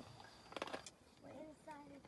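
Spotted hyenas crunching bone as they feed on a carcass: a short cluster of faint, sharp cracks about half a second in.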